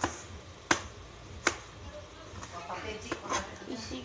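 Two sharp knife strikes on a plastic cutting board, a little under a second apart, as cloves of garlic and onion are cut.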